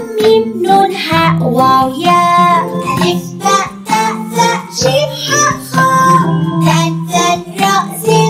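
Arabic children's alphabet song: a child's voice singing the letter names in short, rhythmic notes over an instrumental accompaniment.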